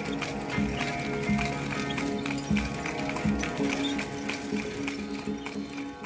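Horse hooves clip-clopping in a steady rhythm over background music with held tones, growing quieter near the end.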